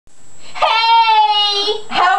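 A girl's voice holding one long, high, drawn-out vocal note for about a second, its pitch sinking slightly near the end.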